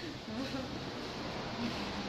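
A steady, even hiss of background room noise.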